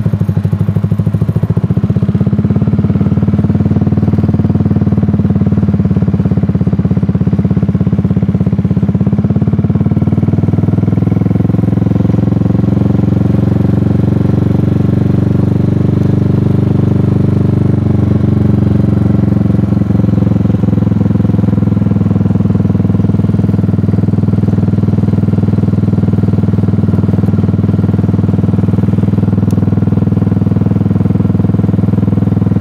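Buell Blast 500 motorcycle's single-cylinder engine running steadily while riding at low speed, with a gentle rise and fall in pitch partway through.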